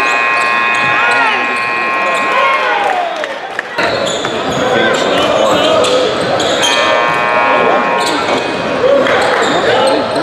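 Live game sound in a gym: basketballs bouncing on a hardwood court, sneakers squeaking, and spectators chattering. A steady several-toned sound is held twice, for about three seconds at the start and about a second and a half later on. The sound drops out briefly just before the four-second mark.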